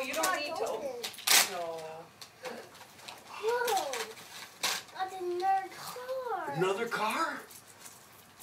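A young child's voice: wordless babbling and exclamations in several short bursts, with a couple of sharp clicks or knocks, the loudest about a second in.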